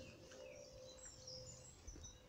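Faint, short high-pitched bird chirps, several scattered through, over a near-silent outdoor background.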